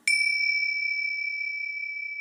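A high-pitched metal chime struck once, ringing on as one clear tone that slowly fades.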